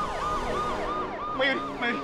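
Police siren in a fast yelp, its pitch swinging up and down about three times a second.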